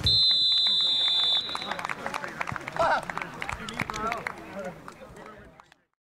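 Referee's whistle blown in one long blast of nearly two seconds. Then players' shouts and calls on an open football pitch, fading out just before the end.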